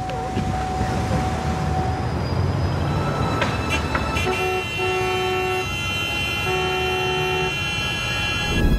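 City street traffic with a low rumble throughout. From about four seconds in, several car horns honk at once, held and overlapping, starting and stopping in blocks.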